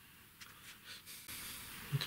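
Faint light scratches and taps of a brush working a finish over turned wood, then a soft, even hiss for the last moments.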